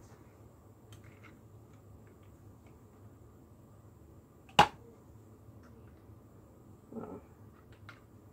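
Plastic clicks and taps from handling a paint bottle and plastic ice cube tray, over quiet room noise. There are a few small clicks, one sharp loud click a little past halfway, and a short soft sound about a second before the end.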